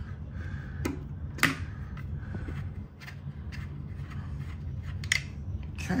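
A few sharp small clicks and light handling noises from thermostat wires being moved at a plastic wall plate, over a steady low hum.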